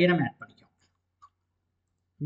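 A few faint computer mouse clicks, after a man's voice trails off at the start.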